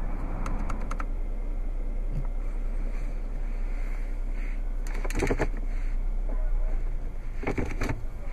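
Steady, low background noise inside a car cabin, with a few faint clicks in the first second and two brief rustling knocks about five and seven and a half seconds in, as a hand moves over the console controls.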